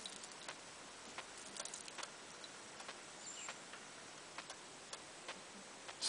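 Faint, irregular small clicks as a metal quartz wristwatch and its link bracelet are handled, over a low steady hiss.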